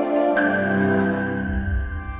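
Outro music: a sustained chord of held notes ringing on, with a higher note joining about half a second in, slowly fading.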